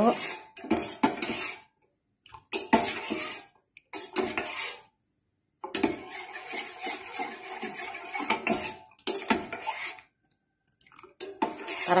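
Metal spoon stirring and scraping against the inside of a stainless steel saucepan, with light clinks, in bursts broken by short pauses, as soap scraps melt in the pan.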